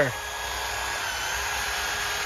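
Cordless drill spinning an abrasive wheel against a steel ATV frame, a steady whir with a grinding hiss as it strips old paint and rust off the metal.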